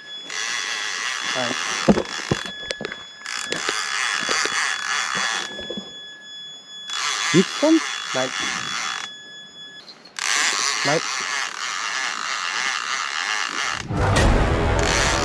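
Fishing reel being wound in, a whirring gear noise in four bursts of about two seconds each, with a few clicks early on. The line is being retrieved after a missed catfish bite in which the fish did not stay hooked.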